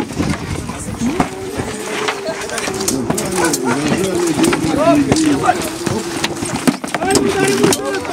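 Shouting voices with some drawn-out calls, cut by several sharp knocks of spears and weapons striking round wooden shields in a reenactment spear fight.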